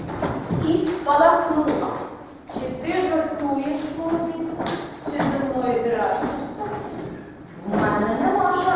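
A high-pitched voice, most likely a woman's, speaking lines in a large, echoing hall, with a few dull thumps.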